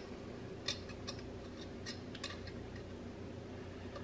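Small sharp clicks and taps, about five in the first two and a half seconds, as a locking tab is set onto a Norton Commando's rear drum-brake backing plate. A faint steady hum runs underneath.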